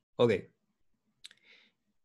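A short, sharp click about a second after a spoken "Ok", followed by a faint breath-like hiss.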